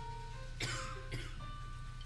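Grand piano playing a few held single notes, a new higher note starting near the end. A cough cuts in about half a second in and a shorter one follows about half a second later.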